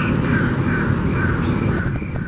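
A bird calling repeatedly in a series of short, crow-like caws, about three a second, over a steady low rumble.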